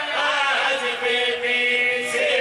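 Several men chanting together in unison into a microphone, sung religious recitation with long drawn-out notes.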